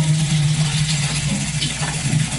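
Live band music in a gap between sung phrases: a steady low note with light percussion over it, after a held sung chord cuts off at the start.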